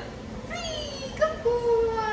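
A dog whining in long, falling, high-pitched cries, with one cry held steady in the middle. A sharp click sounds just after a second in.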